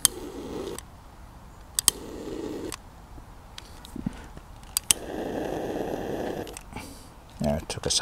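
Trigger-style butane utility lighter clicked three times, each click followed by a short rush of gas flame, as it lights fire starter inside a wood-burning camp stove.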